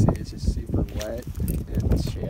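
Mountaineering boots stepping and scraping on loose, broken shale during a steep scramble, as short irregular knocks over a steady low rumble. A short voiced sound, like a breath or murmur, comes about a second in.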